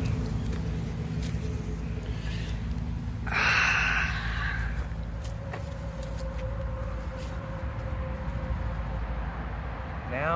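Steady low rumble of distant road traffic, with a louder rushing noise for about a second and a half, about three seconds in, and a faint steady hum in the second half.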